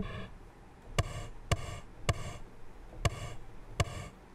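Arturia Pigments synth playing its 'Drumulator' drum preset, one note at a time from a MIDI keyboard: six short hits at uneven spacing, each a sharp click with a brief pitched ring.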